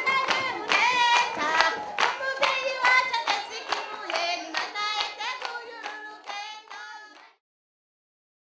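Voices singing together with steady rhythmic hand clapping, fading out over the last few seconds and stopping about seven seconds in.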